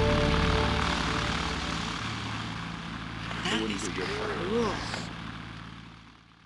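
Music ends about a second in, leaving the steady drone of a Beechcraft Bonanza's propeller engine, with a brief voice over it a few seconds in. The sound then fades out near the end.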